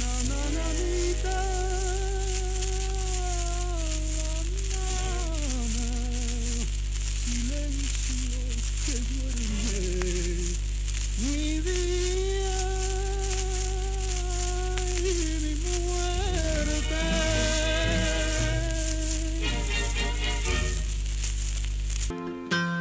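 An old shellac 78 rpm record playing the close of a lullaby: a wordless melody line of long, wavering held notes in two long phrases, over the disc's steady crackle and hiss and a low hum.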